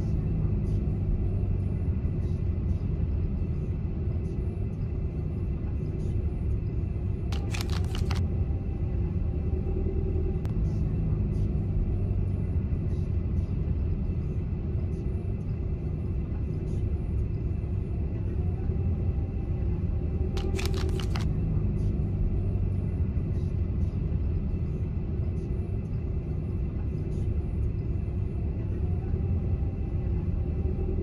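Car cabin road noise at highway speed: a steady low rumble of tyres and engine, with two brief clicking rattles, about a quarter of the way in and again past the middle.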